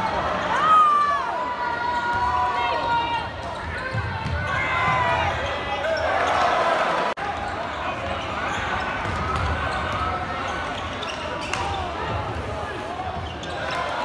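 Live basketball game on a hardwood court in a large hall: sneakers squeaking in short sharp chirps, the ball bouncing as it is dribbled, and a steady hubbub of crowd voices.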